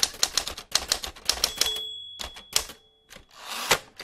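Typewriter sound effect: a rapid run of key clacks, a bell-like ring held for about a second around the middle, then a rising sliding rush that ends in a clack near the end.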